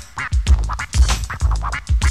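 Boom-bap hip hop instrumental break: a heavy kick-driven drum beat, with a turntable DJ scratching short samples over it in quick back-and-forth strokes.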